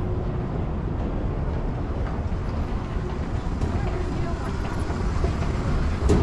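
Ambience of a large, busy airport terminal hall: a steady low rumble with a faint murmur of distant voices.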